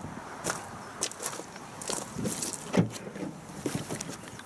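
Footsteps crunching irregularly on loose gravel, with one louder knock about three seconds in.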